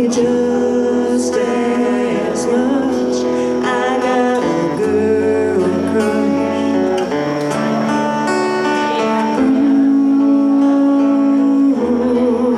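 Acoustic guitar played live under singing, with a long held sung note near the end.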